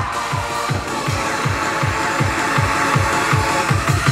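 Korean drums beaten on stage over an amplified backing track, with a heavy electronic bass-drum beat about three strokes a second.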